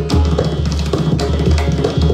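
Tabla and pakhwaj playing together in a jugalbandi: a dense run of strokes with deep, booming bass beats, over a steady harmonium accompaniment.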